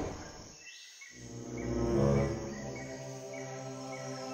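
Soundtrack jungle ambience: small insect-like chirps about twice a second, under a sustained musical chord that grows in about a second in and then holds steady.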